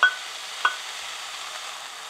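Diced pear sizzling steadily in a hot nonstick frying pan, with two sharp spatula taps that ring briefly, one at the very start and one just over half a second in.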